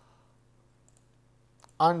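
Near silence with a low steady hum, broken by a couple of faint computer-mouse clicks, the clearer one just before a voice starts again near the end.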